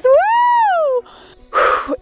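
A high-pitched cheering whoop from a woman, rising and then falling in pitch over about a second, followed near the end by a short breathy gasp.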